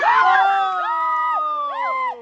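Several people letting out loud, long, high-pitched screams that slide downward, an excited reaction to a giant water balloon bursting. A brief rush of released water can be heard at the very start.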